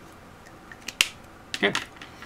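A highlighter being put away: a few faint ticks and then a single sharp plastic click about halfway through.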